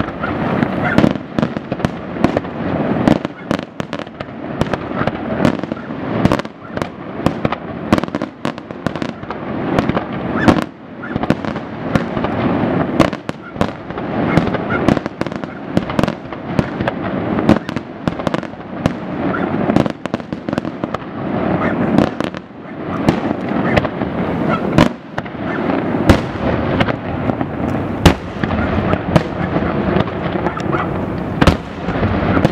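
Europirotecnica fireworks display: aerial shells launching and bursting in rapid succession, several sharp bangs a second over a continuous bed of crackle and rumble.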